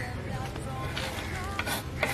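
Knife blade scraping chopped pieces off a wooden cutting board into an aluminium pressure cooker, with a couple of short rasping scrapes.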